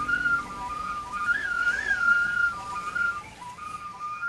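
A single high, pure whistle-like melody stepping between a few notes, with two quick upward swoops about one and a half seconds in.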